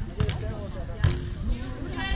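A volleyball being hit twice, two sharp slaps about a second apart, with players' voices calling.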